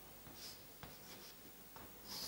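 Faint chalk strokes on a blackboard: a few short scratches, with a light tap of the chalk a little before the middle.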